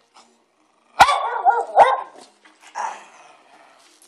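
Dog barking in play: two sharp, loud barks about a second and two seconds in, then a quieter one about a second later.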